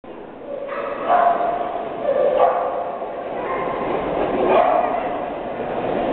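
Dogs barking and people talking in a large, echoing hall, with a few loud calls standing out over the general noise.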